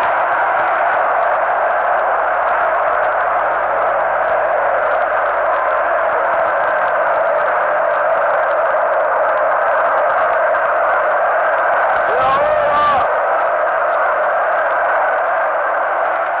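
A huge crowd cheering and shouting in one steady, unbroken roar, sounding thin as on an old archival recording; about twelve seconds in a single voice rises briefly above it.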